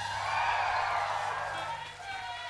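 A single long, drawn-out shout from a voice, rising in pitch and then sinking away, over a steady low hum.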